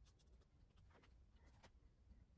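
Very faint scratching of a soft pastel stick stroking across the painting surface, a few short strokes over near-silent room tone.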